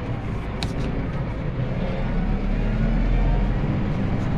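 Tractor engine running, heard from inside the cab as a steady low rumble that grows louder about halfway through.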